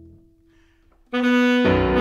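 Saxophone and piano duo: a held piano note dies away to a brief near-quiet pause, then about a second in the saxophone enters loudly on a sustained note, with the piano coming in underneath half a second later.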